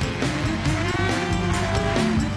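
Stage band playing an up-tempo Kazakh pop song with a steady beat.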